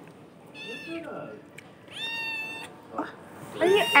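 Kittens meowing: a short high meow that falls in pitch about half a second in, a longer, steady high-pitched meow at about two seconds, and louder calls near the end. Hungry kittens begging for food.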